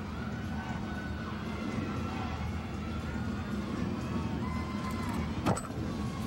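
Arena ambience: a steady low crowd murmur with music of long held notes playing over it, and a single sharp knock near the end.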